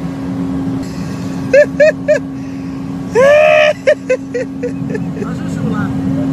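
Steady drone of a private jet's cabin in flight, a low rumble with a constant hum running through it. Over it a voice makes a few short sounds, then one loud long drawn-out call a little past the middle, followed by a quick run of short sounds.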